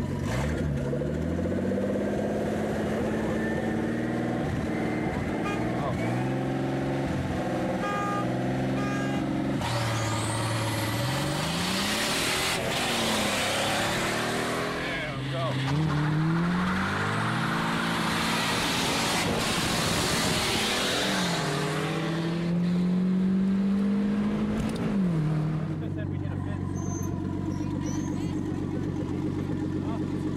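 A Datsun 280ZX Turbo and a Nissan 240SX racing at full throttle. The engine note climbs in pitch and drops back at each upshift, several times over. A loud rush of noise builds in the middle as the cars come past.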